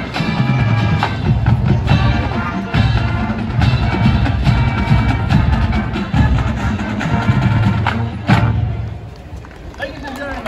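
Marching band playing held brass chords over bass drum and percussion, ending with a sharp final hit about eight seconds in, after which the music stops.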